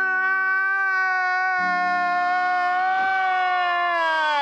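A human voice holds one long, high, wailing note that sags slightly in pitch near the end. A lower steady tone joins it about one and a half seconds in.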